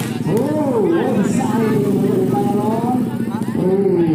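Voices shouting and calling out in long, drawn-out, wordless tones, loud and continuous, with a single short knock right at the start.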